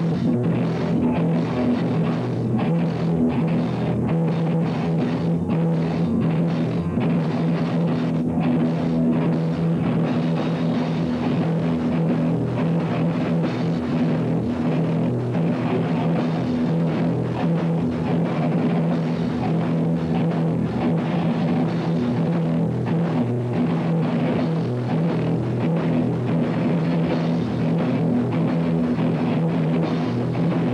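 A rock band playing loud and steady: electric guitars, bass guitar and a drum kit, with drum hits throughout.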